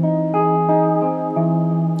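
Seven-string electric guitar playing a chord picked note by note so the notes ring together, with further notes added in the first second and the low note struck again a little over a second in.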